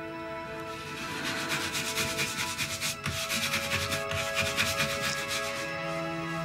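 Rapid, rhythmic scratchy rubbing strokes, several a second, starting about a second in and stopping just before the end, over soft sustained background music.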